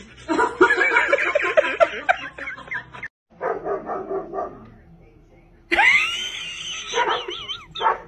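A dog barking and yelping in short runs, with a rising, wavering whine near the end.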